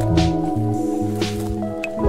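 Background music: held notes over a bass line that changes note every half second or so, with a few short percussive strikes.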